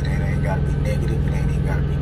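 Vehicle engine idling, a steady low drone, with a man's voice over it.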